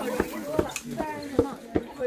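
Footsteps on steep stone stairs: sharp taps about three a second as climbers go up, with other people's voices in the background.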